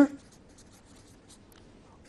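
Marker pen writing on a board: a run of faint, short strokes.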